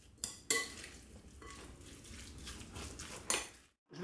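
A metal spoon stirring a chicken marinade in a glass bowl: soft scraping and squelching, with a couple of clinks against the glass near the start and another about three seconds in. It cuts off suddenly just before the end.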